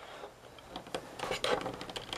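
Stanley knife blade scraping and clicking against the TV's aluminium back panel as it cuts under a glued-down LED backlight strip: faint scattered ticks, with a few sharper clicks in the second half.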